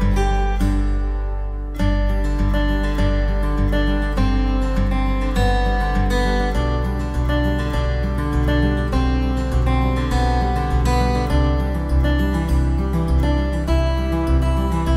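Background music: plucked acoustic guitar with a steady rhythm, joined by a fuller bass line about halfway through.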